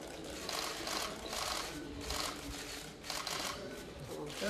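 Press cameras' shutters clicking in rapid bursts, about four bursts in four seconds.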